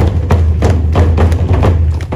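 Large wooden Tongan drums played in a steady rhythm, about three strokes a second, with a deep booming low end under each stroke.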